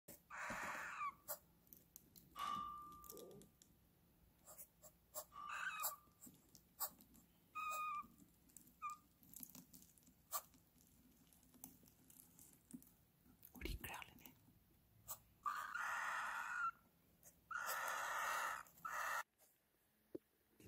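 Young cockatiel chicks in a nest box hissing in three long breathy bursts, the defensive hiss of chicks that have been disturbed. A few short high peeps and scattered small clicks come in between.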